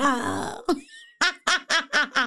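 A woman laughing: first a rough, croaky vocal sound, then from about a second in a run of quick, evenly repeated bursts of laughter.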